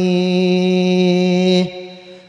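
A man chanting one long held note into a microphone over the sound system. The note stops about a second and a half in and leaves a short fading echo.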